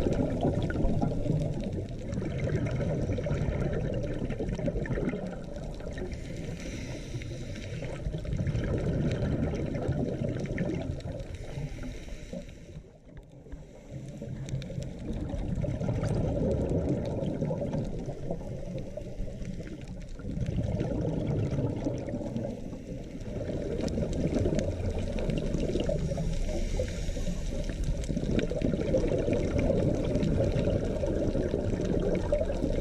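Muffled underwater noise of moving water heard through a submerged camera, swelling and fading every few seconds, with a brief lull about halfway through.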